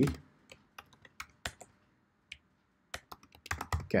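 Computer keyboard keys clicking as code is typed: scattered single keystrokes, a pause of about a second in the middle, then a quick run of keystrokes near the end.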